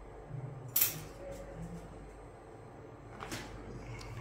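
Two brief sharp clicks, a loud one about a second in and a fainter one near three seconds, over a faint low voice in the first couple of seconds.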